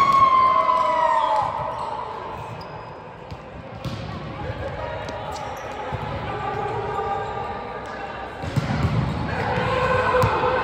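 Sounds of an indoor volleyball rally echoing in a large hall: the ball being struck, with a few sharp knocks in the middle, and players' voices. At the start a long squeal slides down in pitch.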